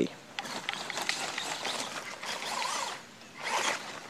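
Small electric 1/18-scale RC truggy driving over a mulch bed, its motor and gear drivetrain buzzing as the throttle is worked. The buzz runs for most of the first three seconds, stops briefly, then comes back in a shorter spurt near the end.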